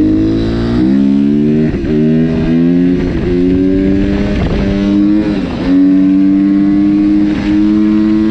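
Suzuki RM-Z 250 dirt bike's four-stroke single-cylinder engine accelerating hard through the gears: the pitch climbs and drops back at each of four or five upshifts over the first five or six seconds, then holds steady at a constant speed.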